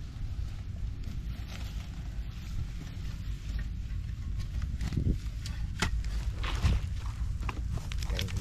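A long wooden-handled digging tool jabbed and levered into the muddy soil of a creek-bank burrow: scraping of earth, with a few separate knocks in the second half, over a steady low rumble.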